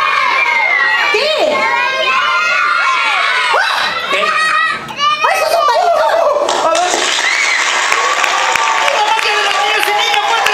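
An audience of children shouting and cheering together, many high voices overlapping, with a brief lull about five seconds in.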